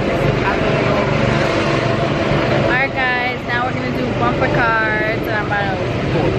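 Go-kart engines running steadily in the background, with a voice speaking briefly twice about halfway through.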